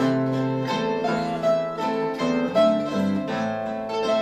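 An acoustic guitar and a pear-shaped, mandolin-like string instrument playing a plucked instrumental passage between sung improvised verses, the notes changing about every half-second.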